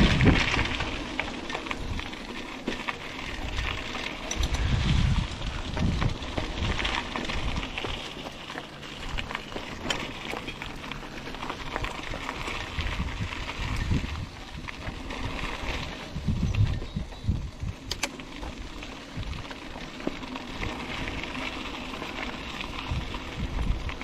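Mountain bike riding along a dirt singletrack: tyres crunching over gravelly dirt with small rattles and clicks from the bike, and wind gusting on the microphone every few seconds.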